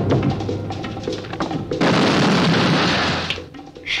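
A loud explosion blast in a film, bursting out about two seconds in and dying away after a little over a second, over dramatic trailer music. A loud, noisy rumble fills the first part before the blast.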